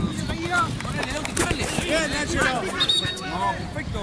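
Several voices of players and spectators calling and shouting over one another on a football pitch, with wind noise on the microphone and a brief high tone about three seconds in.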